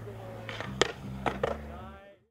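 Skateboard wheels rolling on a concrete bowl, with a sharp clack of the board striking concrete or coping just under a second in, and two more close together about half a second later.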